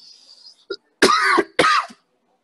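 A person coughing twice in quick succession, about a second in; both coughs are loud and short.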